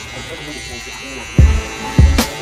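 Andis Slimline Pro Li cordless trimmer buzzing steadily as it cuts in a bald line on the nape, under a hip-hop beat whose heavy kick drum hits about a second and a half in.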